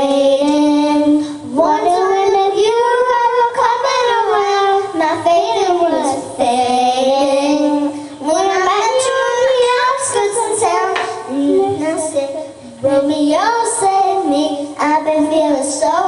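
Two young girls singing a pop song together into handheld microphones, with long held and gliding sung notes.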